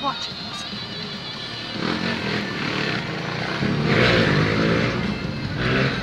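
Traffic engines heard from inside a car's cabin, with one vehicle's engine revving up and growing loudest about four seconds in.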